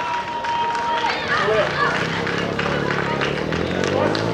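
Voices of coaches and spectators shouting and calling out from the sideline during a youth football match, overlapping in open air.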